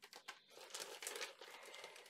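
Faint crinkling of thin plastic parts bags being handled, with a few light ticks first, then irregular crackle.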